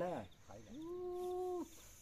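A short spoken syllable, then a single long voiced call that rises into a steady pitch, holds for about a second and breaks off.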